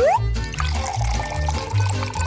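Background music with a steady beat, over milk pouring in a thin stream into a metal pot.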